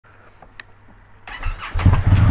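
Indian FTR1200's V-twin engine being started: a short burst of cranking past the middle, then the engine catches near the end and settles into a steady low idle.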